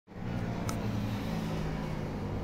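Street traffic: a car's engine humming steadily as it comes along the road, with one short, high click about a third of the way in.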